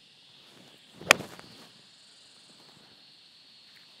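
Golf iron striking a ball off the toe: one sharp click about a second in, with a brief swish of the swing around it.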